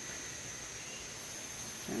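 Steady, high-pitched insect chorus from the surrounding jungle: one continuous shrill tone, with a still higher buzz joining about a second in.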